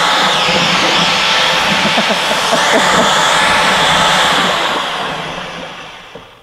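Large electric drill with a mixing paddle running steadily as it stirs a big vat of pottery glaze. It winds down near the end.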